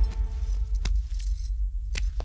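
A few light clicks with a jingle to them, spaced unevenly, over a steady low hum.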